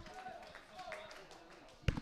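Faint distant voices over low stadium background noise in a gap of the commentary, with one sharp click near the end.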